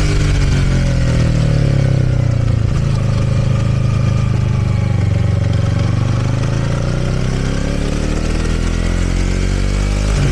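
Motorcycle engine running under way, heard from on the bike with a steady rush of wind noise; the engine note eases down over the first few seconds, then rises again as the bike accelerates in the second half.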